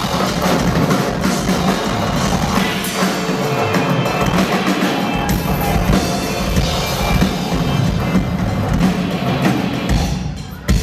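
Live rock drum solo on a full drum kit: rapid strokes on the drums and cymbals. The bass drum comes in heavily about halfway through.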